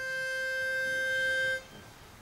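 Barbershop pitch pipe sounding one steady held note, which stops about a second and a half in. It is the starting pitch given to the quartet before they sing.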